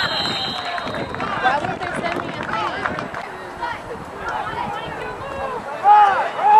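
Several people talking and calling out at once, a babble of overlapping voices with no single clear speaker and a couple of louder calls near the end.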